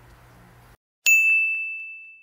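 A single bright chime, a bell-like ding sound effect marking the outro logo card, striking about a second in and ringing on one high tone as it fades away. Before it, faint room tone cuts off to silence.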